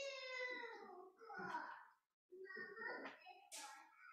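Faint, high-pitched human voice in several short stretches, with a brief pause about two seconds in.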